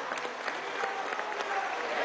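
A roomful of people applauding, many hands clapping at once, with crowd voices calling out over the clapping.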